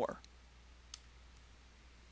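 A single short click about a second in, a stylus tapping a tablet screen, over a faint steady hum, just after the last of a spoken word.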